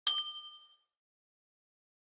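A single bright electronic ding, struck once and ringing out, fading away within about half a second.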